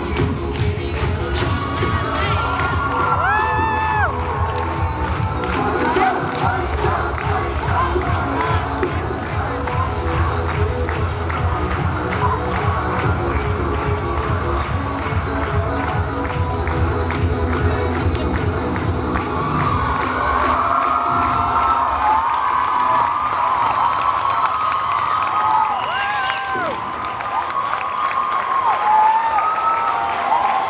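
A crowd of teenagers cheering and screaming over loud music with a steady beat. The music drops out about two-thirds of the way through, leaving the cheering and a few high-pitched screams.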